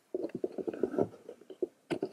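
Handling noise from a camera being moved and set in place: a quick run of irregular low bumps and rubs on the microphone.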